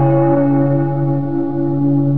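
A deep, bell-like musical tone that starts suddenly and rings on, several steady pitches held together, beginning to fade near the end.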